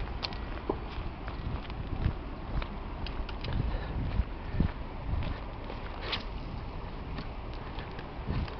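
Footsteps on a dirt and gravel riverbank: irregular soft thuds with a few small clicks, over a steady low rumble.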